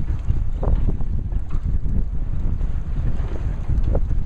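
Wind buffeting the microphone: a loud, unsteady low rumble that covers the scene.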